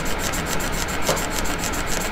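A Wacom pen with a soft nib is rubbed quickly back and forth on the Cintiq Pro's glass screen. It makes a continuous scratchy squeak in fast, even strokes. The squeak comes from where the nib attaches inside the pen.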